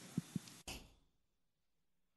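A few faint breaths and soft handling bumps on a handheld microphone, then about a second in the sound cuts out to dead silence as the microphone feed is switched off.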